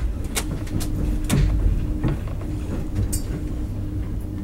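Passenger train running, heard from inside the carriage: a steady low rumble with a faint hum, broken by a few sharp clicks and knocks.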